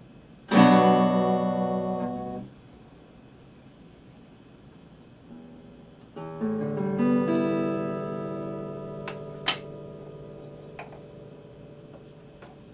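Acoustic guitar: a chord strummed about half a second in that is cut short after two seconds, then about six seconds in a chord picked note by note and left ringing and fading, with a sharp click about three seconds later.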